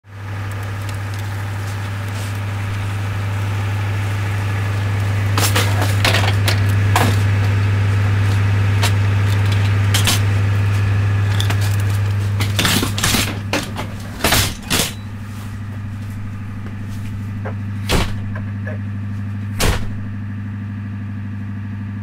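An ambulance idles with a steady low hum while a gurney is rolled and loaded into the back, rattling and clanking. Near the end the two rear doors slam shut, one after the other, about two seconds apart.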